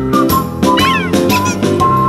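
Background music with a cat meowing sound effect laid over it about a second in.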